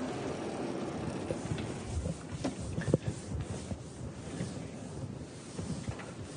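Steady room noise with soft rustling and a couple of faint knocks about two and a half and three seconds in.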